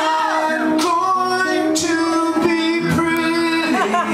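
Male voice singing held, sliding notes over a strummed acoustic guitar, live in a room.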